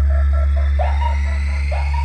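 Large DJ sound-system speakers playing a loud, steady, deep bass drone for a bass check of the speaker boxes. Short electronic chirps come about once a second over it, and a high synth tone slowly rises.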